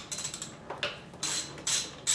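Ratchet wrench clicking in several short bursts of strokes as it turns out a bolt on a motorcycle's thermostat housing.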